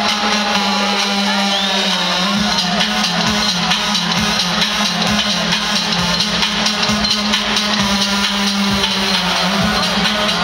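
Live music played loud over an arena sound system, heard from within the crowd, with a heavy steady bass and a drum beat.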